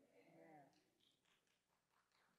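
Near silence: a faint voice in the first moment, away from the microphone, then only faint room sounds.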